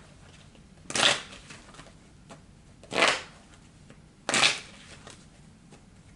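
A tarot deck shuffled by hand: three short bursts of cards shuffling, about a second in, at three seconds and again at about four and a half seconds.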